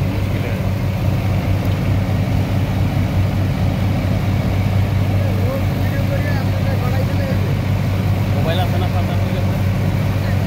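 Diesel engine of a sand-dredging pump running steadily at a constant low hum, while the pump draws off the water-and-sand mix from the boat's hold. Faint voices sound in the background.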